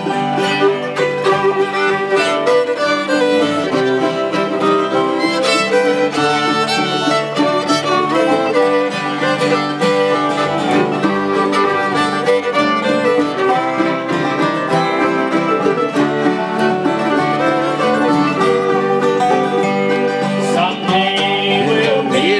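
A live acoustic bluegrass band plays an instrumental break between sung verses. A fiddle stands out over strummed acoustic guitars and mandolin.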